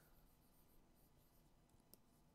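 Near silence, with the faint scratch of a stylus drawing loose strokes on a drawing tablet and a couple of faint clicks near the end.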